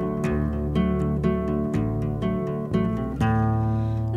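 Music with no singing: acoustic guitar picked in a steady rhythm, about two strokes a second, over sustained low bass notes.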